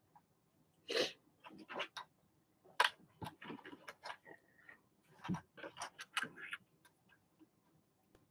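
Small sewing clips being snapped onto the edge of two layered fabric pieces, with fabric handling: an irregular scatter of short, light clicks and soft rustles, the sharpest about a second in and just before three seconds.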